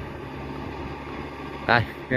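Tractor engine running steadily under load while pulling a puddling harrow through a flooded rice paddy: a low, even hum.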